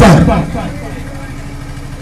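A man's voice, amplified through a microphone and loudspeakers, ends a word and trails off. A pause follows, filled with a steady low rumble and background noise.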